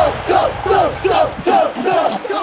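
Several men yelling a drawn-out "Whassup!" back and forth at one another, the shouts overlapping at about three a second.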